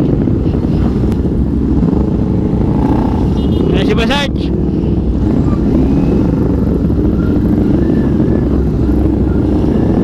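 Motorcycles riding off in a group, heard from a moving rider's camera: a steady, loud engine rumble mixed with wind noise on the microphone. A short wavering, higher-pitched sound comes about four seconds in.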